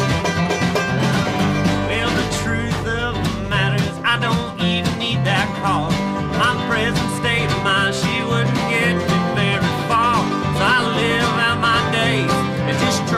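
Live country-bluegrass band playing an instrumental passage: strummed acoustic guitar, banjo, electric bass and snare drum. A wavering lead melody comes in about two seconds in over the steady rhythm.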